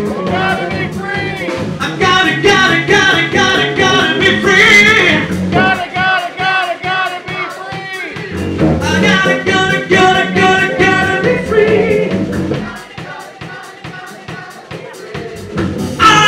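Live rock band playing: electric guitar, bass and drum kit with a lead vocal. The music drops back for a few seconds near the end before coming in full again.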